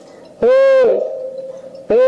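A man's voice shouting one drawn-out, high-pitched word into a podium microphone, about half a second long. Another shouted word begins just at the end.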